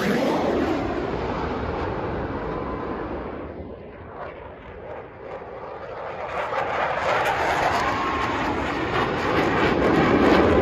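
Jet noise from Blue Angels F/A-18 Super Hornets: the sound of the four-jet diamond fades away after it passes overhead, then from about six seconds in it builds again as the following pair of jets takes off.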